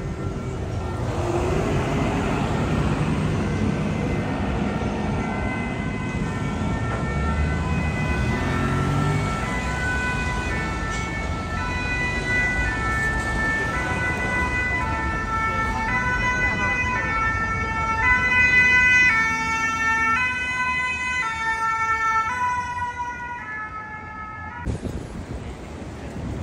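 Emergency-vehicle two-tone siren, the French high-low alternating type, coming in over street traffic rumble, growing louder to a peak late on, then fading and cutting off abruptly just before the end.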